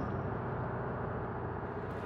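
Steady low rumble of a bus engine and running gear, heard from inside the passenger cabin.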